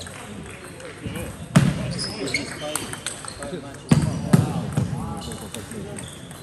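Table tennis rally: the celluloid-type ball clicking sharply off bats and table, with three louder thuds, one about a second and a half in and two close together around four seconds, over the chatter of a busy sports hall.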